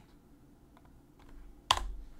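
Computer keyboard keystrokes: a few faint key taps, then one sharp, louder key strike near the end.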